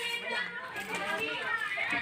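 Faint background voices of people talking at a distance, quieter than the nearby speech on either side.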